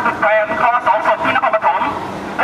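A person speaking continuously; only speech is heard.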